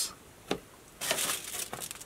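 A brief tap, then about a second of crinkling from a roll of aluminium tin foil being handled and lifted out of a cardboard box.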